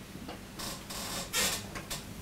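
A man's breathing close to a microphone in a pause between sentences: three short, breathy noises a little under half a second apart.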